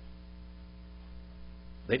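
Steady electrical mains hum, a low buzz made of several even, unchanging tones. A man's voice begins right at the end.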